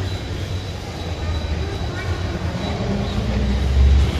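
Low, steady rumbling background noise with faint voices in it, growing louder near the end.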